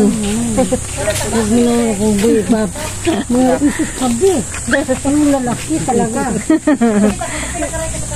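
Several people talking in short, lively phrases, with a steady high hiss underneath.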